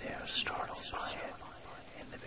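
A person whispering a voice-over, soft and breathy, with a hissing sibilant about a third of a second in.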